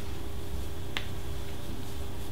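Steady low room hum, with a single short click about halfway through.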